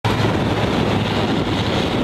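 A Land Rover's engine running steadily as it drives off-road, heavily overlaid by wind noise buffeting the microphone.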